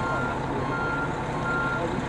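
Fire truck's backup alarm beeping in an even rhythm, about three high single-tone beeps in two seconds, as the truck reverses. The engine runs underneath with a steady low hum.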